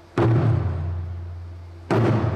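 Large taiko drum struck with wooden sticks in slow single beats, one just after the start and another near the end, each with a deep booming tone that rings and fades between strokes.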